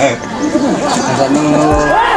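Voices talking, with music playing underneath.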